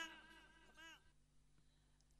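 Near silence in the gap between songs. The last notes of the previous song die away at the very start.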